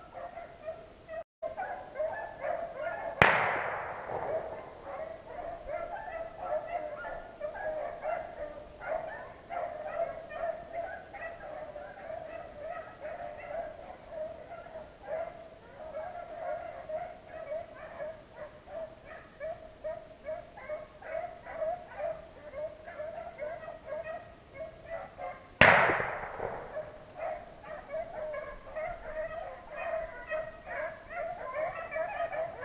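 A pack of rabbit hounds baying steadily on a chase. Two loud gunshots ring out over them, one about three seconds in and one about twenty-two seconds later.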